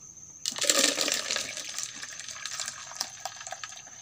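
Liquid noni-fruit organic fertiliser poured from a plastic jerrycan into a plastic dipper. The splashing starts suddenly about half a second in, is strongest for the first second, then dwindles as the pour thins.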